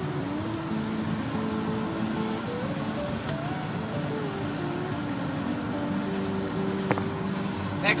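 Music with a slow melody of held notes stepping up and down, over the steady road noise of a moving car, heard from inside the cabin. A single sharp click comes near the end.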